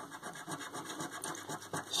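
A coin scraping the scratch-off coating of a scratchcard in quick, repeated short strokes.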